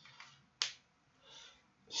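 A single sharp click of a pen being handled, a little over half a second in, then a brief soft rustle about a second later.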